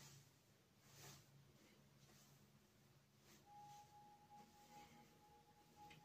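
Near silence: room tone with a faint low hum, and a faint steady high tone that comes in a little past halfway.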